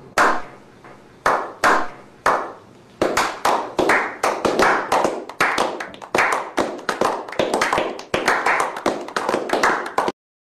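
Hand clapping that starts as a few slow, separate claps and, from about three seconds in, becomes a small group clapping quickly and steadily.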